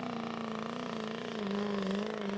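Diesel engine of a tractor-pull vehicle running flat out as it drags the weight-transfer sled down the track, a steady high engine note whose pitch sags a little partway through.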